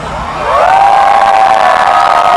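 Large concert crowd cheering and screaming as a song ends, swelling louder about half a second in.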